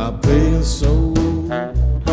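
Recorded band music in an instrumental stretch of a bluesy rock song: a held melodic line over bass notes and a steady drum beat, with no singing.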